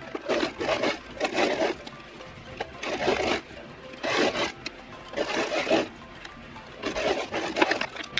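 Domestic electric sewing machine stitching in six short runs of about half a second to a second each, with pauses between, while sewing a metal zipper into a dress seam.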